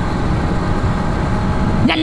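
Steady wind rush and rumble over the microphone of a motorcycle cruising along a road, with its engine running underneath.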